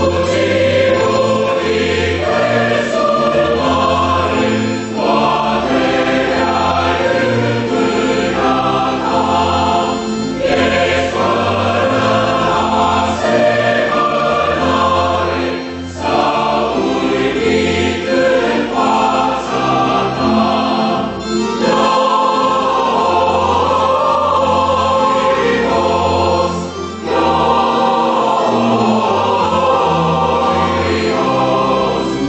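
Mixed choir of men's and women's voices singing a hymn. It comes in suddenly after a brief silence and goes on in phrases of about five seconds, each divided by a short breath pause.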